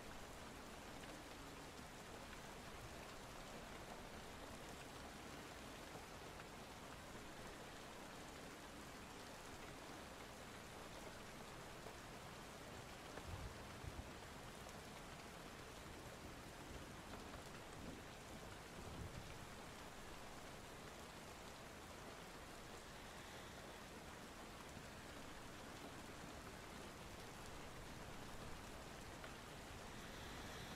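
Steady rain falling, an even hiss with no words over it, with a few soft low thumps around the middle.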